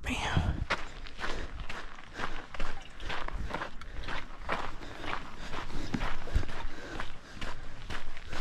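Footsteps of a hiker walking on a gravelly dirt trail, about two steps a second.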